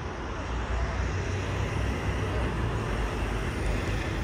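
Airplane passing overhead: a steady, broad roar with an uneven low rumble underneath.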